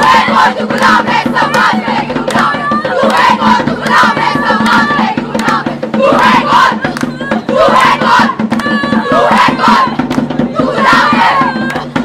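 A group of women's voices shouting and chanting loudly together over sharp rhythmic beats, as in a street-play chorus; the voices stop abruptly at the end.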